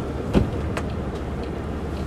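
Camper van engine running steadily at low revs, heard from inside the cab, with one sharp click about a third of a second in and a couple of fainter ticks after it.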